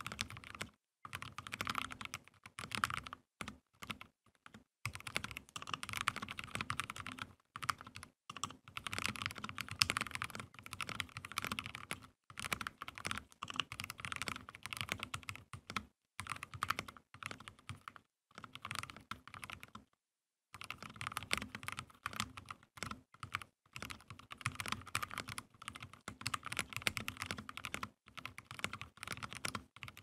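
Typing on a custom 60% mechanical keyboard with lubed Cherry MX Black linear switches, a carbon fiber plate, a bamboo case and PBT keycaps: quick runs of keystroke clacks broken by short pauses every few seconds.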